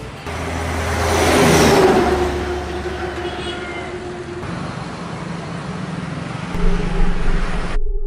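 Road traffic: a motor vehicle passes, loudest about a second and a half in, followed by steady traffic noise with a low engine hum. The sound cuts off suddenly just before the end.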